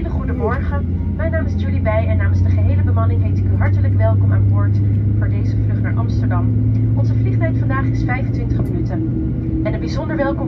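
Boeing 737-900 cabin noise during pushback: a loud, steady low hum that slowly rises. About six seconds in a higher whine joins and climbs gently in pitch, and a second climbing tone follows near the end.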